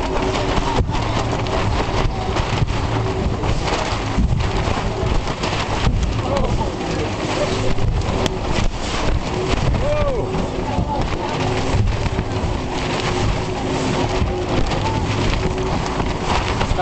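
Small motorboat's engine running steadily at speed under a dense rush of water, with spray splashing up over the side and onto the boat.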